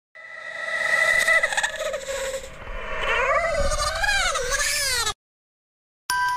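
A sound effect of a long, wavering cry that slides up and down in pitch, cutting off suddenly about five seconds in.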